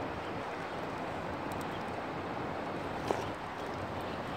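Steady rushing of river current running over a rocky bank, with one short tap about three seconds in.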